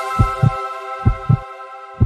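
Logo intro music: a sustained synth chord slowly fading, over a low heartbeat-like double thump that repeats a little faster than once a second.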